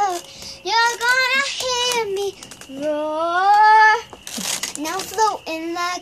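A young girl singing unaccompanied, in long held notes, one of them rising steadily in pitch near the middle, followed by a brief noisy breath-like burst and shorter sung syllables.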